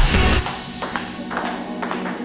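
Table tennis ball clicking back and forth in a rally, sharp hits about half a second apart, over background music.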